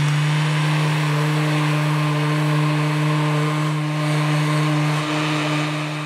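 Electric random orbital sander running steadily at a constant pitch, a hum with a noisy whir over it, as it sands a lacquered wood finish with 400-grit paper.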